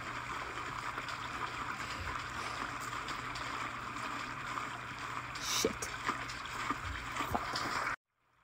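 Stream ambience: steady running water, with a few brief faint clicks a little over halfway through, cutting off suddenly at the end.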